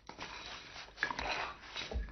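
Scraping and rustling of hands digging through fire debris, a sound effect, growing louder about a second in.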